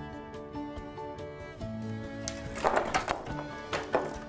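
Background music with steady notes, over which the balanced chain of painted wooden sticks collapses and clatters onto the floor about two and a half seconds in, with a sharp knock near the end. The fall follows the removal of the small counterweight, which throws the chain out of balance.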